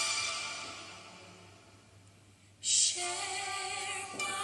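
Recorded song with a female singer, the dance's backing music: a held passage fades away almost to quiet, then a short hissing burst near the middle leads into a new phrase of sung notes.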